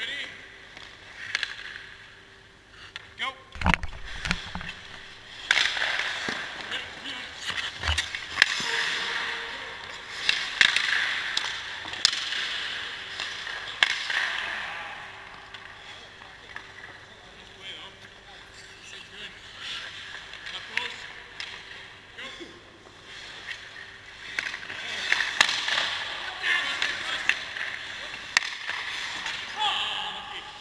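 Ice hockey skate blades scraping and carving across rink ice in swelling and fading hisses, with scattered sharp clacks of sticks and pucks. A heavy low thump comes about four seconds in.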